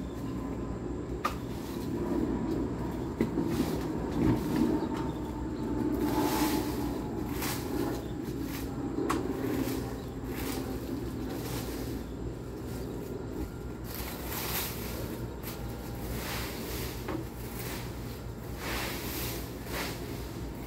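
Rake scraping and rustling through dry fallen leaves in repeated short strokes, more often near the end, over a steady low hum.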